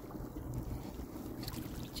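Wind noise on the microphone outdoors: a steady low rumble with a faint hiss over it.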